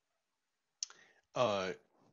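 Silence, then a sharp single click a little under a second in, followed by a man's voice starting to speak.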